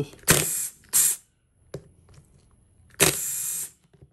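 Cordless drill with a socket extension backing out the cover bolts of a power steering pump. It runs in three short bursts: two brief ones in the first second and a longer one about three seconds in.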